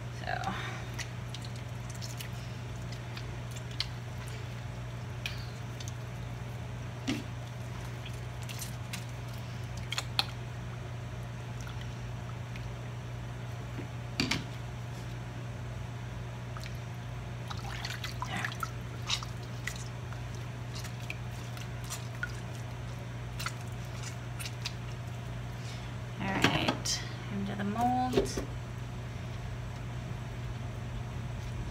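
Warm whey dripping and splashing as a ball of fresh mozzarella curd is dipped, squeezed and lifted over a pot, with scattered soft clicks over a steady low hum. A busier burst of handling sounds, with a short pitched sound in it, comes a few seconds before the end.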